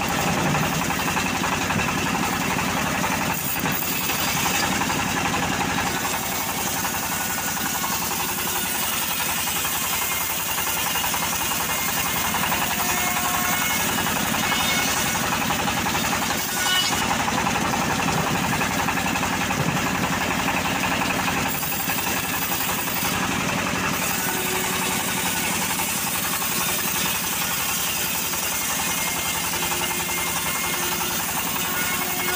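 Homemade bandsaw mill ripping a teak log lengthwise: the machine runs steadily under load while the blade rasps through the wood.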